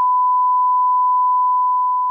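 A 1 kHz sine reference test tone, the bars-and-tone signal: one loud, steady, unbroken beep at a single pitch.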